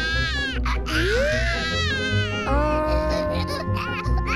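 Baby-style crying, several wavering, rising and falling wails, over background music.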